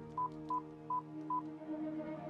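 Mobile phone keypad beeps as buttons are pressed: five short beeps of the same pitch, unevenly spaced about a third to half a second apart, over a sustained ambient music drone.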